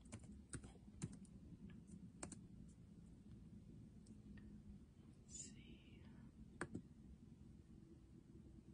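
Faint, scattered clicks of a laptop's keys and touchpad, a dozen or so irregular taps with the loudest about two thirds of the way in, and a brief soft hiss a little past the middle.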